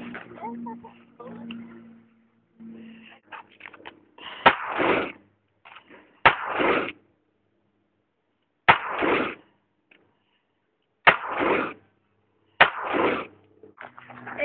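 A handgun fired five times, shots about one and a half to two and a half seconds apart, each crack followed by a brief echo.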